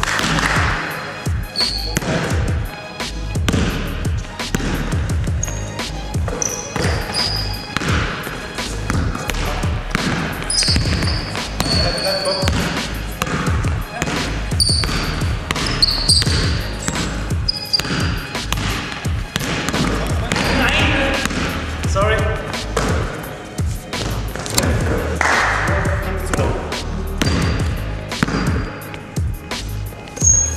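A basketball being dribbled and bounced on a sports-hall floor, with many short thuds, while sneakers squeak briefly on the court now and then. Background music plays underneath.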